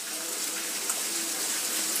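Steady background hiss with a faint hum beneath it, and no distinct event.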